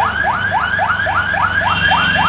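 An electronic vehicle alarm sounding a rapid run of rising chirps, about four a second, over the low hum of an idling engine.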